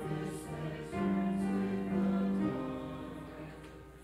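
A congregation singing a hymn together with piano accompaniment, holding each note for about a second, the phrase fading away near the end.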